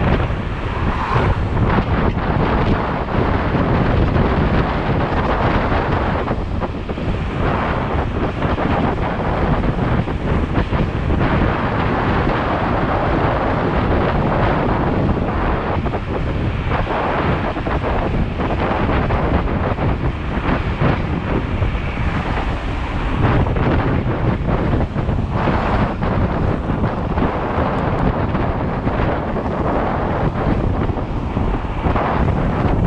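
Loud, steady wind rushing over the microphone of an electric scooter riding along a road at speed, swelling and easing a little. There is no engine sound.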